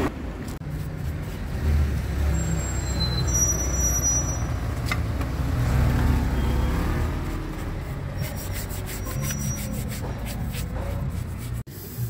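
A steady low motor-vehicle rumble, which drops away abruptly near the end.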